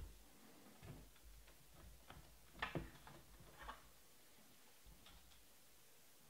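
Near silence with a few faint clicks and taps of trading cards being handled on a table, the loudest a quick pair a little before three seconds in.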